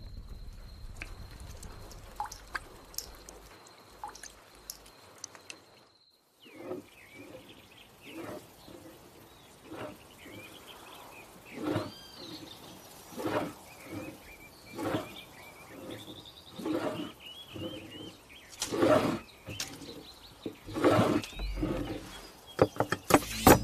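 Birds chirping in outdoor ambience, with a louder short sound every one to two seconds. Before that, a steady high thin tone, like insects at night, runs for the first six seconds and cuts off.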